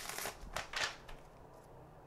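A few short rustles and taps of a tarot card deck being handled between shuffles in the first second, then faint room tone.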